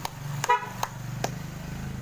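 Slow hand claps, about two or three a second. A short vehicle horn toot sounds about half a second in, over a vehicle engine running.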